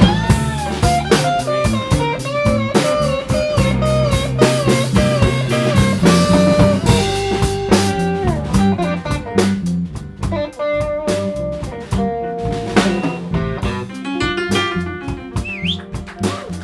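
Live blues band playing: electric guitar, bass and drums, with a harmonica played into the vocal mic and bending notes above the band.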